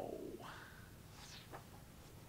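The drawn-out tail of a man's spoken 'how?' falling in pitch and fading, then a quiet room with a few faint, brief sounds.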